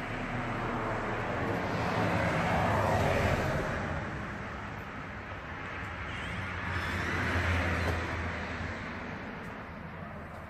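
Road traffic passing outside, a wash of tyre and engine noise that swells and fades twice, with the second pass carrying more low rumble.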